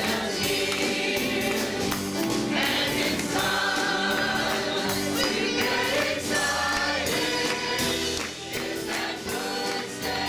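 Mixed church choir of men and women singing a gospel song.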